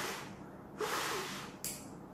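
Breath blown hard out through a 3M 8210 N95 respirator, heard as two breathy hisses about a second apart with a short, higher puff near the end; it is a test of whether the filter lets the breath through to a lighter flame held at the mask.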